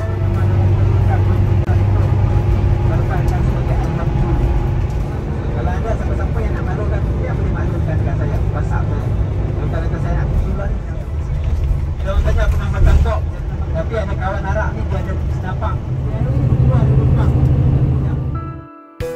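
Steady low vehicle engine rumble with people's voices talking over it.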